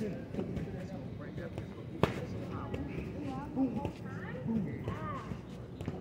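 Boxing gloves landing punches: one sharp smack about two seconds in and a few lighter taps, with faint voices in the background.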